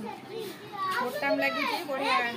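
A young child's high-pitched voice chattering, its pitch sliding up and down, louder in the second half.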